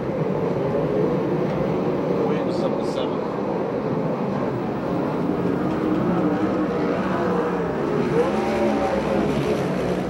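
Several 410 sprint car V8 engines running at low revs as the field circles the dirt oval under caution. Their overlapping notes waver up and down, with pitch arcs as cars pass near the end.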